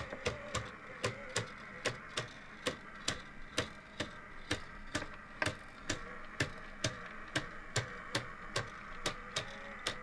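3D-printed plastic triple-axis tourbillon model's escapement ticking steadily, about two to three ticks a second, as the kit's motor keeps the mechanism running.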